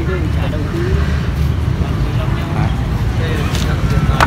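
Steady low rumble with faint voices talking in the background, and a couple of sharp clicks near the end.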